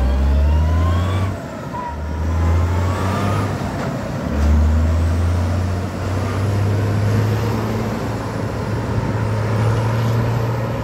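Turbocharged diesel engine of an IMT 5136 tractor pulling hard under acceleration. Its pitch climbs and dips twice in the first four seconds, then holds a long steady climb.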